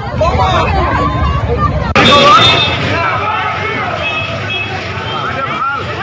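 Crowd noise: many voices shouting and talking over one another, with a vehicle engine's low rumble beneath. The crowd gets suddenly louder about two seconds in.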